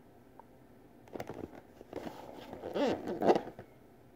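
Hands rubbing and sliding on a cardboard box as it is turned over in the hands: a run of rustles and scrapes starting about a second in, loudest a little after three seconds.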